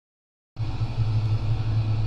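Silence for about half a second, then a steady low hum with background hiss, the room tone of an indoor recording.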